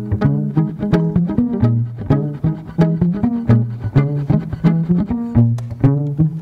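String music: a groove of quick plucked notes over a low bass figure that repeats about once a second.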